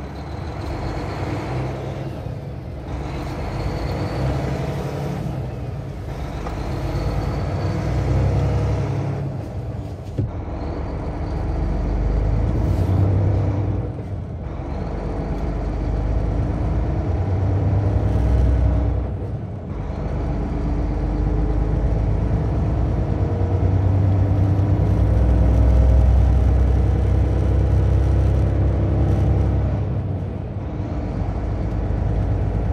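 Road vehicle's engine heard from inside the cab, accelerating away from a stop and pulling through about five upshifts: each gear climbs in pitch and loudness, then dips briefly at the shift, with the gaps between shifts growing longer, before settling into a steady cruise with road noise.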